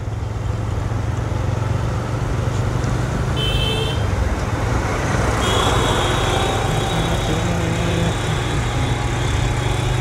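TVS Raider 125 single-cylinder motorcycle engine running steadily on the move, with wind and road noise over the microphone and passing traffic. A short high-pitched horn beep sounds about three and a half seconds in.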